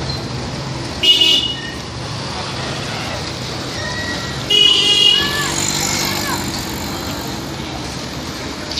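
Vehicle horn honking twice in street traffic: a short toot about a second in and a longer one at about four and a half seconds, over the steady hum of two-wheeler engines.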